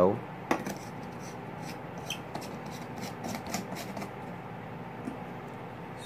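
A light bulb being screwed into a lamp holder: faint scraping and small clicks of the screw base turning in the socket, with a sharper click about half a second in.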